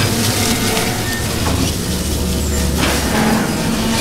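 Film sound design: a steady low rumble under a hissing wash of noise, swelling in soft whooshes a few times.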